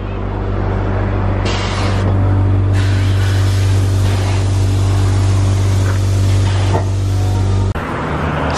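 Air suspension on a Honda S2000 being aired out: a loud hiss of air venting from the bags over a steady low hum, lowering the car to the ground. Both cut off abruptly just before the end.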